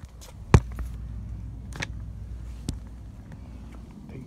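Handling noise from a green plastic shopping basket being carried and moved: a few sharp knocks and clicks, the loudest about half a second in, over a low steady rumble.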